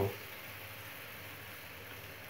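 A little water in hot oil bubbling and sizzling in a kadai: a steady, even hiss.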